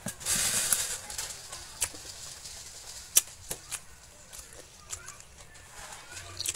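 A person chewing a bean sprout spring roll close to the microphone: a noisy burst during the first second, then scattered sharp mouth clicks and smacks.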